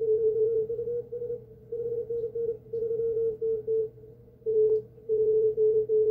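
Morse code (CW) signal received on an Icom IC-705 transceiver: a single mid-pitched tone keyed on and off in quick dots and dashes, with a short pause about four seconds in. It is heard through a narrow 50 Hz CW filter, so the tone stands out with little noise around it.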